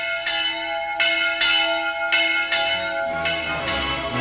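Church bells ringing, with about five strikes spaced half a second to a second apart, each leaving its tones hanging on. Music begins to come in near the end.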